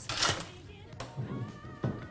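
Background music playing, with a few sharp clinks of ice in a glass rocks glass at the start.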